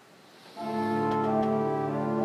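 Four-manual Willis pipe organ sounding a loud sustained chord that comes in about half a second in, with some of the upper notes shifting partway through.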